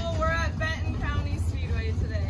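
A young woman's voice talking over a steady low rumble.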